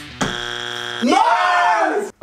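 A steady buzzing tone lasting under a second, followed by a drawn-out vocal exclamation that rises and then falls in pitch.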